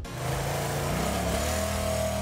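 Motor scooter engine pulling away. Its pitch rises over the first second or so, then holds steady.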